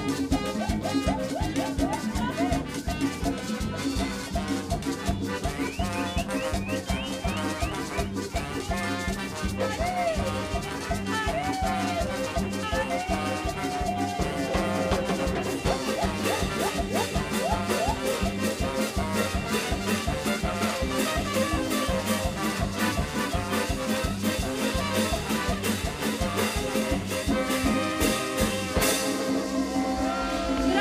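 Live cumbia band playing a steady dance beat on congas and drum kit with hand percussion, and trumpet and trombone lines over it.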